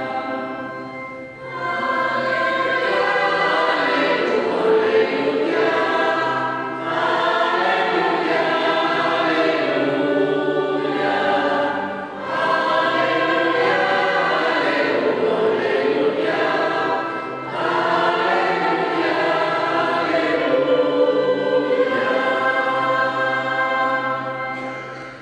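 Children's church choir singing a sacred song during Mass, in phrases of about five seconds, each followed by a brief pause for breath.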